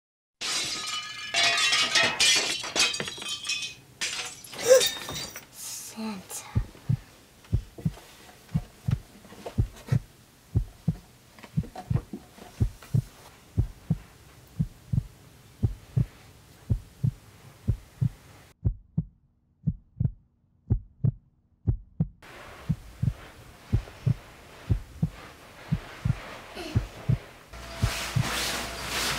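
A heartbeat sound effect: steady low thumps, about two a second, used as suspense. The first few seconds hold a louder, busier burst of sound before the thumps start.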